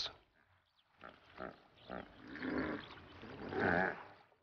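Hippos grazing: a few short tearing sounds as grass is cropped, then two grunting calls from a hippo, the second, near the end, the louder.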